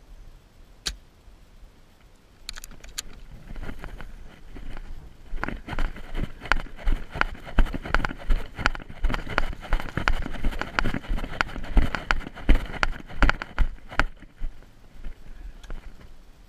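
A person running over grass in airsoft gear: heavy footfalls with rattling kit, about two thumps a second, starting about two seconds in, growing louder and stopping near the end.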